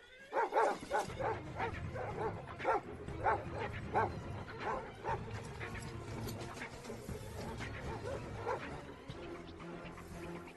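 Several Dobermanns barking in quick succession, about two or three barks a second, with film music underneath.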